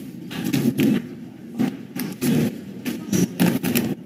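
Indistinct murmur of voices in a meeting room, with scattered knocks and rustles as people settle in.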